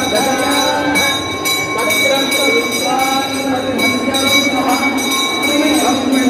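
Voices chanting in long, sustained, bending lines over a loudspeaker, with a steady high ringing tone running under them.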